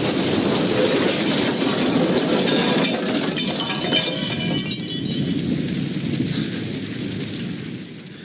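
Movie sound effects of a helicopter exploding and burning: a dense, loud rush of blast and flames. Crackling and clinking debris comes from about three to five seconds in, and the sound fades toward the end.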